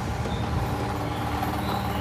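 Steady background noise with a faint low hum and no sudden events.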